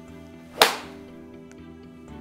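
Golf iron striking a ball off an artificial-turf hitting mat: one sharp crack about half a second in, trailing off briefly.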